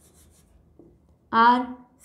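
Marker pen writing on a whiteboard: a quick run of faint, short, high-pitched squeaky strokes in the first second. Then a woman's voice says "R" once.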